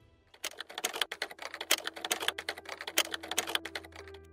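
Typing sound effect: a fast, irregular clatter of key clicks starting a moment in and keeping up throughout, with a faint held note underneath in the second half.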